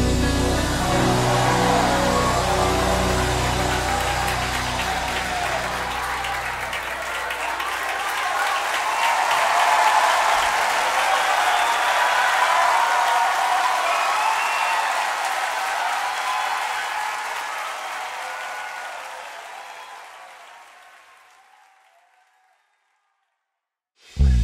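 The closing of a gospel song's music track: the bass drops out about eight seconds in, leaving a high, noisy wash that fades to silence shortly before the end.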